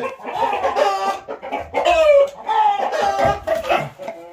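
Roosters calling: a run of loud clucks and crowing calls, several overlapping, with the loudest call about halfway through.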